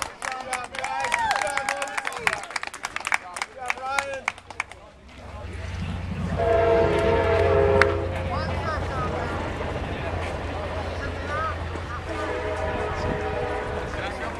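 Voices chattering and calling for the first few seconds, then a steady low rumble comes in. Over it, a horn with several tones sounds twice: once for about a second and a half, about six seconds in, and again from about twelve seconds in.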